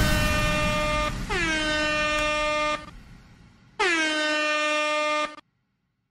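Air horn sounding three long blasts, each dropping in pitch as it starts and then held on one note. A short gap separates the first two blasts and a longer gap comes before the third.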